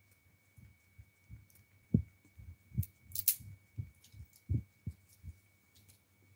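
Irregular soft low thumps, about two a second, with two sharp clicks a little past the middle: handling or tapping noises close to the microphone. A faint steady high whine runs underneath.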